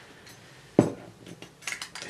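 Small handling clicks and knocks from a Bencini Comet camera and its film spool being worked back into place: one sharp knock a little before halfway, then a few light clicks near the end.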